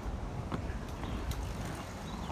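Roller skate wheels rolling on a paved trail: a steady low rumble with a few light clicks.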